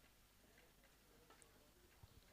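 Near silence: faint open-air background with a few soft, scattered ticks.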